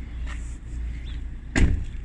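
A single sharp thump about one and a half seconds in, over a steady low rumble.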